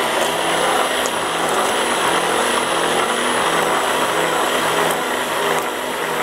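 Handheld electric immersion blender running steadily with a constant motor hum, its blade mixing cottage cheese in a plastic cup.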